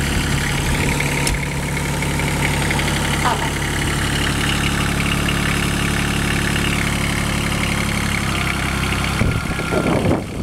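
Small diesel engine of a Kubota 1600 compact tractor running steadily at low revs, then cutting out about nine seconds in.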